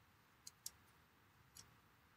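Near silence: room tone with three faint, short clicks, two close together about half a second in and one about a second and a half in.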